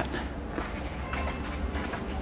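Steady low rumble with a faint hiss: the background sound of a department store floor as the camera is carried through it.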